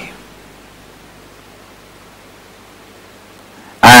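Steady faint hiss of room tone with nothing else in it. A man's voice begins near the end.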